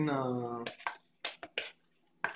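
A drawn-out spoken word, then a handful of light clicks and taps as a red plastic mixing bowl is handled and shifted.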